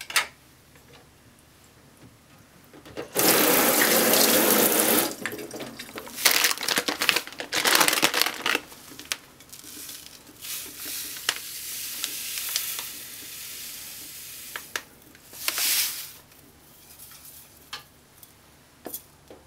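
Water running from a kitchen tap into a sink for about two seconds, then uneven splashes and pouring of liquid into a rice cooker's inner pot, with a short rustling burst near the end.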